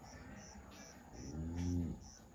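Crickets chirping steadily, about two or three chirps a second. Near the end a louder, low call rises and falls in pitch for about half a second.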